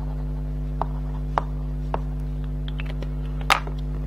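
A steady low electrical hum, with a few light taps and clicks of a Gelato crayon stick working on card over a plastic board; the sharpest click comes about three and a half seconds in.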